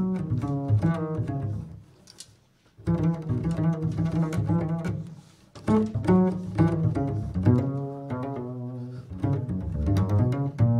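Upright double bass plucked pizzicato, a run of short, separate notes. The line breaks off briefly about two seconds in and again just past the middle before carrying on.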